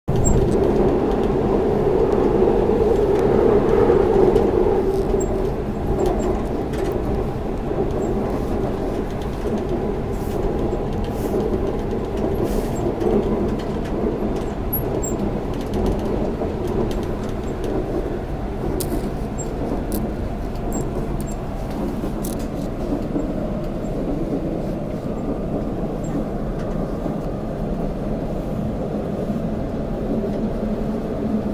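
Seoul Metro Line 2 subway train running, heard from inside the carriage: a steady rumble, a little louder in the first few seconds.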